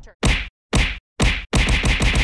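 Edited outro sound effect: three short, sharp hits about half a second apart with dead silence between them, then a fast stuttering run of the same hit starting near the end.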